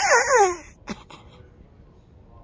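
A boy's loud, wailing cry of laughter, pitch falling in two downward sweeps, dying away under a second in. A brief sharp sound follows just after.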